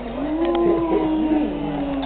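A person humming one long closed-mouth "mmm", held for about two seconds and sliding slightly down in pitch.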